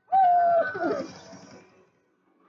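A high voice holding a long 'oooh' note that starts suddenly, then slides down in pitch and fades after about a second.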